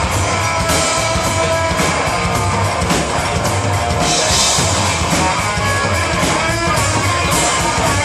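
Psychobilly band playing live in an instrumental passage without vocals: electric guitar over a steady drum-kit beat.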